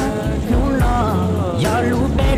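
Hmong song: a sung melody, bending up and down in pitch, over a backing track with a steady low bass.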